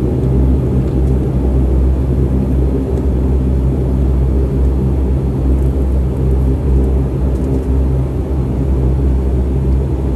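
Airliner cabin noise during the landing roll just after touchdown: a loud, steady low rumble heard from inside the cabin.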